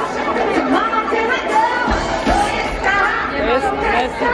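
Crowd chatter: many voices talking over one another, with music playing underneath.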